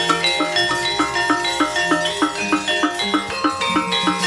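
Javanese gamelan playing a brisk, steady accompaniment for a wayang kulit puppet fight. Bronze metallophones strike an even run of ringing notes, about four a second, over held low notes.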